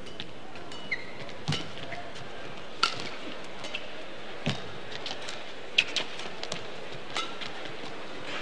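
Badminton rally: sharp racket strikes on the shuttlecock, about one every one to one and a half seconds, with brief shoe squeaks on the court, over steady arena hall noise.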